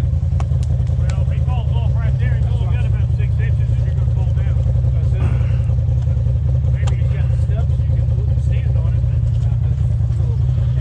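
Polaris RZR side-by-side's engine running at low, steady revs as it crawls over rocks, with a few sharp knocks about a second in and again near seven seconds. Voices call out over it.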